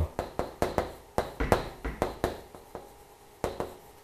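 Chalk tapping and scraping on a chalkboard as hanja characters are written stroke by stroke: an irregular run of sharp taps, with a short pause about three seconds in.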